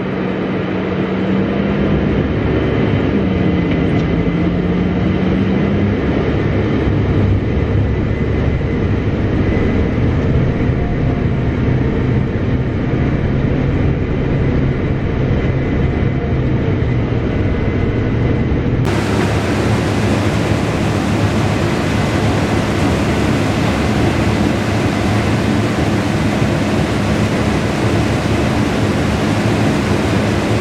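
Farm machinery engines running steadily, a tractor and a Case IH combine harvesting corn side by side, with an engine note that dips and recovers a few seconds in. About two-thirds of the way through, a steady hiss suddenly joins the drone and stays.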